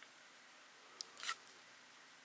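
Handling noise on the camera: a sharp click about a second in, then a brief scrape, over faint room tone.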